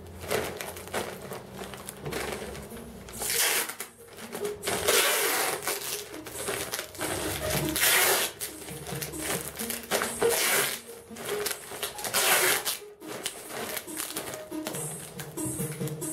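A plastic carrier bag crinkling and clear packing tape being pulled off its roll as a parcel is wrapped, in short noisy bursts every couple of seconds. Music plays faintly underneath.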